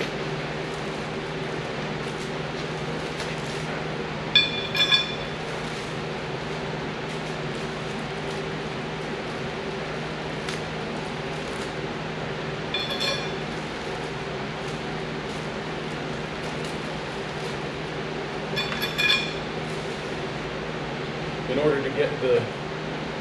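Small metal hardware clinking and ringing briefly three times, about five, thirteen and nineteen seconds in, over a steady background hum.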